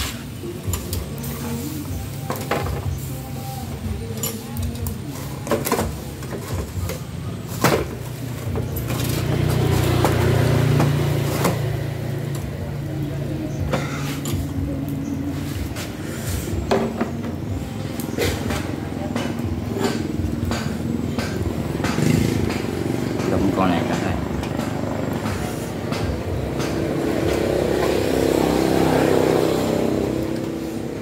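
Metal tongs and chopsticks clicking and tapping against snail shells and a grill grate, in sharp separate clicks throughout. An engine hum in the background grows louder around ten seconds in and then fades, and indistinct voices are heard under it.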